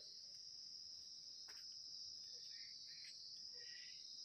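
Near silence with a faint, steady, high-pitched insect chirring, like crickets, in the background.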